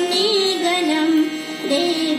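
A group of schoolchildren singing a melody together in long held notes.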